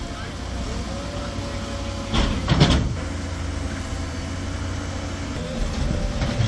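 JCB backhoe loader's diesel engine running with a steady low rumble. About two seconds in there is a loud clattering burst lasting under a second.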